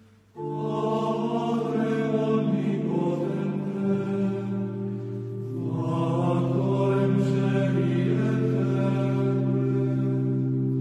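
A slow chant-style vocal piece starts about half a second in after a brief near-silence: voices singing a melody over long-held low notes, with the low note dropping in pitch partway through.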